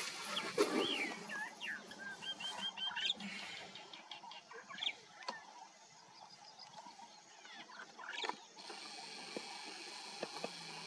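Birds calling: a few whistled, swooping notes and a short rapid trill in the first three seconds, then scattered soft clicks and rustles.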